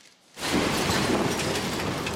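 A steady, even rushing noise that starts suddenly about half a second in, after a brief near silence.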